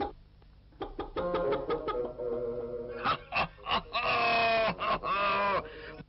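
Cartoon chicken sound effects: a run of short clucks, then longer, pitch-bending squawks in the second half.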